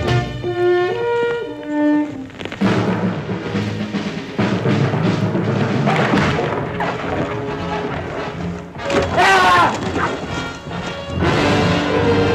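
Orchestral film-trailer music with brass and timpani. Held notes for the first two seconds give way to a dense, loud passage with heavy thuds. A brief, wavering high-pitched sound rises out of it about nine seconds in.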